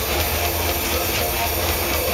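Heavy metal band playing live, with distorted electric guitars, bass and drum kit, heard as a dense, loud, unbroken wall of sound.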